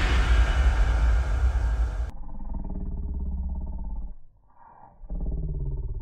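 Sound effect of an animated logo sting: a deep boom with a rumbling whoosh that cuts off sharply about two seconds in. It is followed by a low, rapidly pulsing growl that breaks off briefly near the end and then resumes.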